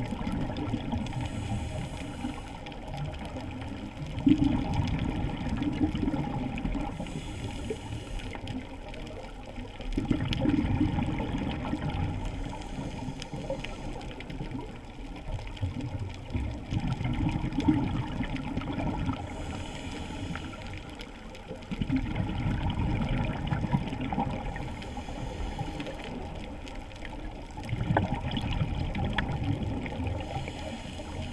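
Scuba diver breathing underwater: exhaled bubbles surge out about every five to six seconds, with a short high hiss of inhaling through the regulator between some of them, over a faint crackling background.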